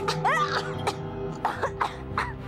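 Children coughing several times in short bursts, with a rising groan of disgust, while they brush away cobwebs. Steady background music runs underneath.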